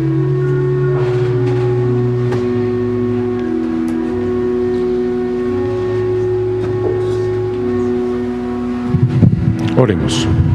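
Church organ playing slow, sustained held chords that change every few seconds. Near the end comes a brief cluster of low thumps.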